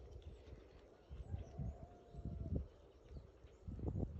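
Soft, irregular low thumps over quiet outdoor ambience, with a faint held note lasting about a second in the middle.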